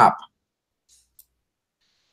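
The tail of a man's spoken sentence, then near silence broken by one faint, short click just over a second in.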